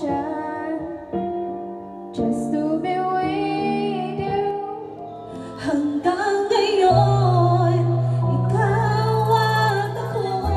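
Music: a woman singing with instrumental backing, long held notes over a bass line that changes note every second or two.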